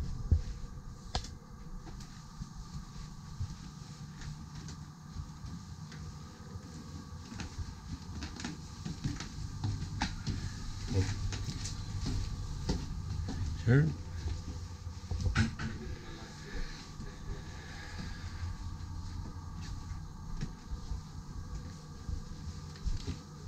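Steady low hum with scattered clicks and knocks of cabin doors and handling, and a couple of brief spoken words about two-thirds of the way in.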